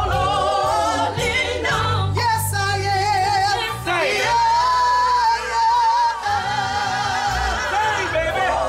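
Live gospel singing with band accompaniment, voices rising and falling over a steady bass, with one long held note about halfway through.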